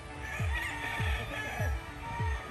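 A rooster crows once, a call of about a second and a half, over background music with a steady beat of about two bass kicks a second.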